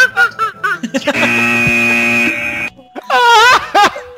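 A comic vocal bit: short voiced sounds, then a steady buzzing tone for about a second and a half, then a high wailing voice that rises and falls near the end.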